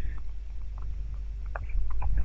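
A steady low hum under a faint hiss, with a few faint, short clicks.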